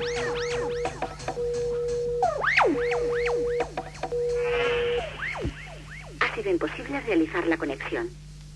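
Electronic dance music from a 1990s bakalao DJ set: a held synth tone cut into short stretches, overlaid with zapping sweeps that fall and rise in pitch. The music drops out about five seconds in, and a spoken voice comes in about a second later.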